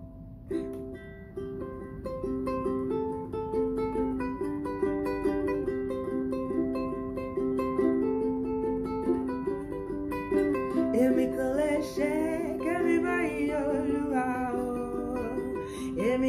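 Ukulele playing a steady pattern of plucked chords, starting about half a second in. About two-thirds of the way through, a woman's voice joins, singing a Yoruba praise song over it.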